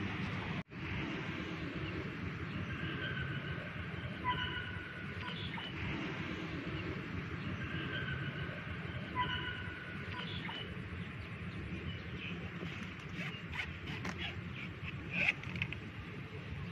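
Steady outdoor background noise with a bird calling in two short runs of chirps about five seconds apart, and a few sharp clicks near the end.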